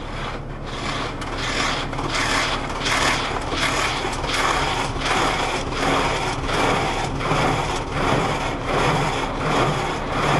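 Rotating cloth brushes of an automatic car wash scrubbing over the car, heard from inside the cabin: a rhythmic swish about every two-thirds of a second, getting louder over the first couple of seconds, over a steady machine hum.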